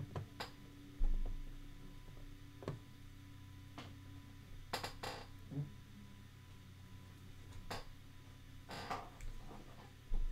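Faint, scattered computer mouse clicks over a steady low electrical hum with a faint high tone, with a single low thump about a second in, the loudest sound.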